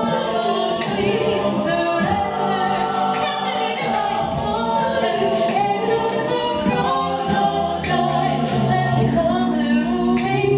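A co-ed a cappella group singing: a female lead voice over held backing harmonies and a low sung bass line, with no instruments.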